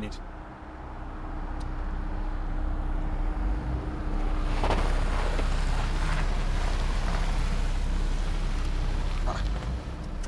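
A car running close by in the street; its engine and tyre noise grows louder from about four and a half seconds in, over a low steady rumble.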